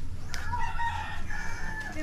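Rooster crowing: one long call that starts about a third of a second in and holds for about a second and a half.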